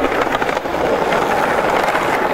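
Skateboard and BMX wheels rolling over stone paving slabs: a steady rolling rumble with scattered small clicks and knocks.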